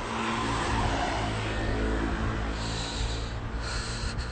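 A motor vehicle going by close to the phone: a steady low engine hum with tyre noise that swells about a second in and then eases.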